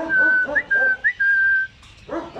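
A person whistling at the dogs: three short whistles, each a quick upward flick into a held note. Under the first second the caged dogs give short whining yelps.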